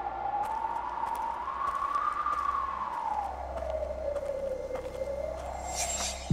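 Eerie soundtrack effect: a single tone that glides slowly up and then down, over a low drone that grows louder about halfway through.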